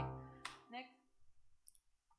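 A woman's speaking voice trailing off in the first moment, then near silence broken by a few faint, scattered clicks.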